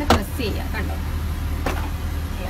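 Two sharp clicks from handled plastic fittings of an aircraft lavatory, a loud one just after the start and a fainter one near the end, over a steady low hum.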